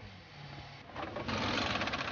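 Pneumatic wheel guns at a Formula 1 pit stop, a fast mechanical rattle starting about a second in.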